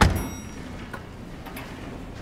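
A loud thump right at the start, followed at once by a short high elevator arrival ding, then a steady low hum with a few faint clicks as the stainless-steel lift doors slide open.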